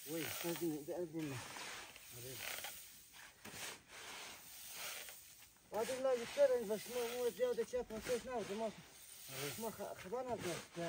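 Wheat grain being scooped with a shovel and tossed up for winnowing, showering back down onto the heap and tarpaulin in several scoops. People's voices sound over it near the start and, loudest, from about six seconds in.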